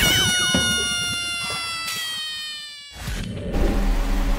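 A long ringing pitched tone that starts suddenly, falls slightly in pitch and fades away over about three seconds. It is followed by a low steady hum.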